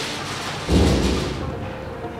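Background music with a sudden deep boom about two-thirds of a second in, fading away over about a second.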